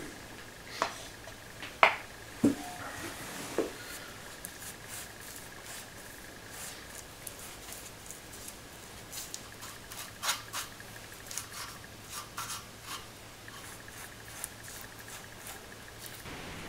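A paintbrush working rust primer onto a steel trailing arm: faint scattered brushing and scratching strokes with a few sharper clicks and taps, the loudest in the first few seconds, over a faint steady hum.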